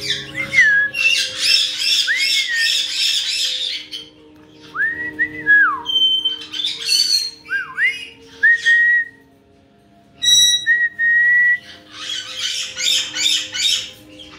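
Caique parrots calling: bursts of rapid squawks alternate with clear whistles that swoop up and down, and a steady held whistle comes about two-thirds of the way through.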